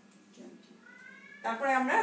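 A cat meowing: a faint call rising in pitch about a second in, then a louder meow near the end.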